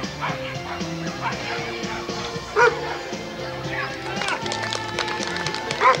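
A dog barking, with two loud barks about two and a half seconds in and near the end, over steady background music and voices.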